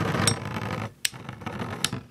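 Two Beyblade spinning tops whirring and rattling on a plastic stadium floor, with three sharp clicks as they knock together. The rattle drops off suddenly just before a second in.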